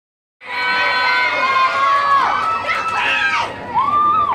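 Cheer squad of students shouting a cheer chant together, starting abruptly just under half a second in, with long drawn-out calls that rise and fall in pitch.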